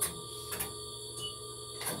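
Steady electrical hum of X-ray equipment, with two faint clicks and one short high beep a little over a second in: the exposure signal as the image is taken.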